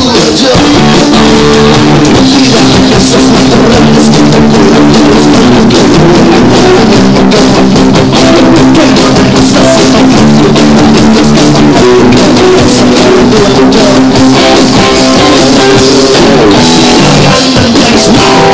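Live rock band playing loud and steady: two electric guitars, an electric bass and a drum kit.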